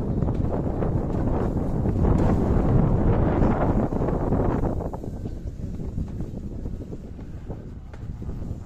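Wind buffeting the phone's microphone, mixed with the rumble of an alpine coaster sled running along its metal track. It is loud for about the first five seconds, then drops noticeably quieter.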